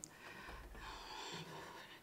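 Quiet room tone with a faint breath.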